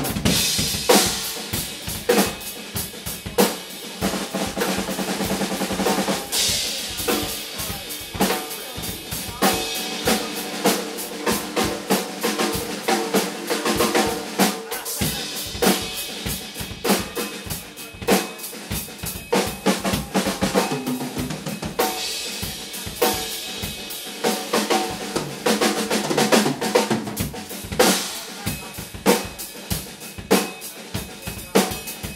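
Two acoustic drum kits played together in a duet: dense, continuous bass drum, snare and tom strikes with crashing cymbals.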